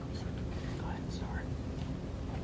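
Steady low room hum with faint, indistinct whispering.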